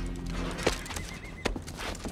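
Horses neighing and hooves clopping, with a few sharp hoof knocks.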